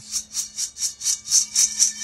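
Freshly roasted coffee beans tossed in a stainless steel colander, rattling and sliding over the perforated metal in a quick rhythmic swish about three times a second. The shaking cools the hot beans evenly so they stop roasting.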